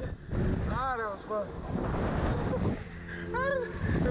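Wind rushing over the microphone of a capsule swinging high in the air on a Slingshot reverse-bungee ride. A rider gives short, high-pitched yelps about a second in and again near the end.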